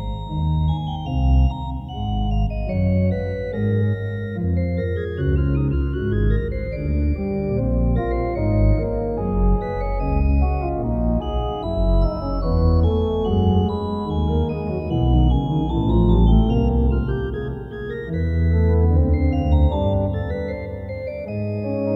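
Wyvern Menuet two-manual digital organ playing a three-part trio sonata at a moderato tempo: two manual lines weave around each other over a running pedal bass line.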